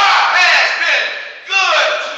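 A preacher's voice shouting from the pulpit in long, drawn-out phrases whose pitch rises and falls, with a fresh loud shout starting about a second and a half in.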